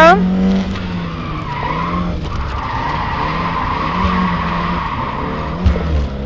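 Rally car engine running under load, heard from inside the cabin, with the tyres squealing steadily through a turn for a few seconds in the middle. There is a short knock near the end.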